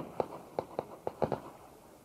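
A quick run of about seven short, sharp knocks or taps at irregular spacing, fading out in the last half-second.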